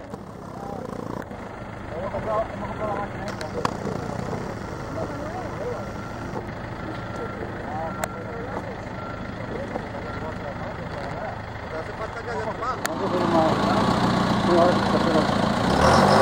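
Steady drone of a farm tractor engine, with faint voices over it; the engine gets louder about thirteen seconds in.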